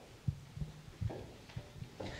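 A few dull, low thumps over faint room noise in a large hall, with no speech.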